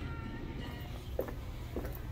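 Footsteps on a tiled floor, two steps about half a second apart starting about a second in, over a steady low hum, with faint wavering high tones in the first half.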